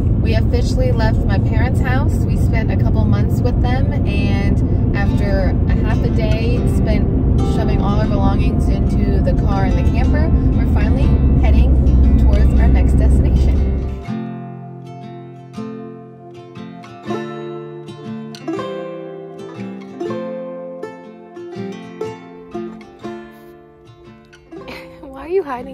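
Steady low road rumble inside a moving car's cabin, under people talking, for the first half; it stops abruptly about 14 seconds in, and light plucked-string background music takes over.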